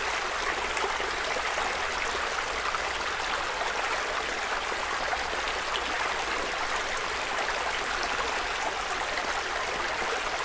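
Playback of a stereo XY field recording of outdoor ambience: a steady, even rushing noise with a low city rumble underneath, heard through mid-side processing that gives the sides a 2 dB boost to widen it.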